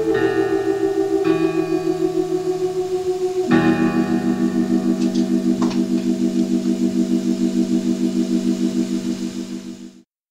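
Old-school dungeon-synth keyboard music: sustained, organ-like synthesizer chords with a fast pulsing tremolo. The chord changes about a second in and again about three and a half seconds in, then fades to silence at the end of the piece.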